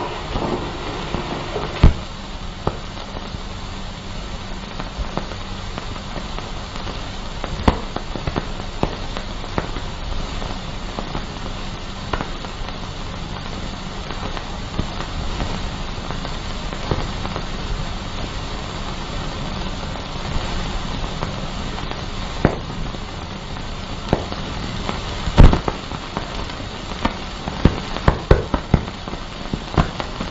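Steady hiss with scattered clicks and pops from the worn soundtrack of a 1940s film, with no speech or music; the loudest pop comes about 25 seconds in.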